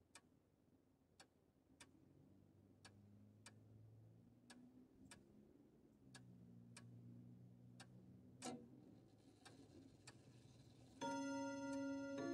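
Faint, slow grandfather-clock tick-tock: sharp ticks in uneven pairs, about thirteen in ten seconds, over a soft low hum. About eleven seconds in, louder bell-like chiming tones begin.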